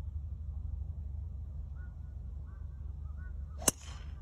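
A golf driver striking a ball off the tee: one sharp crack near the end, over a steady low rumble.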